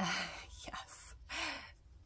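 A woman breathing audibly with a gasp-like intake of breath, and a short soft voiced sound about one and a half seconds in.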